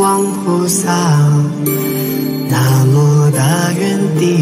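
Buddhist devotional chant laid over the video as music: a voice singing long, wavering notes that glide between pitches over a sustained low accompaniment.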